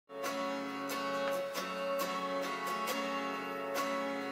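Yamaha MODX synthesizer keyboard playing a chordal song intro: sustained notes with a new note or chord struck about every half second.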